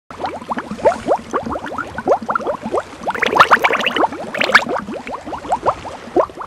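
Bubbling water sound effect: a dense, irregular stream of short rising blips, busiest around the middle.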